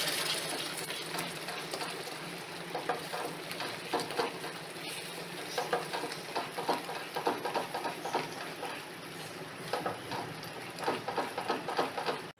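Spatula stirring and scraping through a hot, bubbling fudge mixture in a nonstick pan, in irregular runs of strokes over a steady sizzle from the cooking mixture as coffee is worked in.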